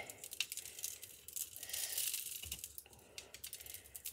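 Light scattered clicking and rattling of small glitter and diamond sprinkles being shaken onto a faux-frosted mug, with some of them falling onto a foam tray.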